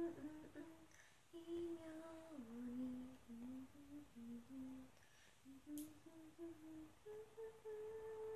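A woman humming a tune softly, in a string of held notes that step up and down, with a short pause near the middle.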